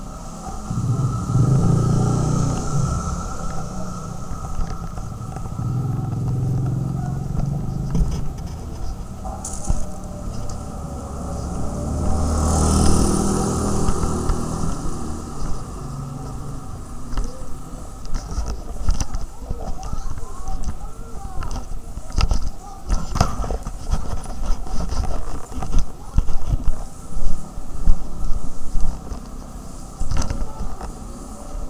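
Street noise in a narrow lane: motor vehicles pass a few times in the first half, swelling and fading, with background voices, and irregular knocks and clicks crowd the second half.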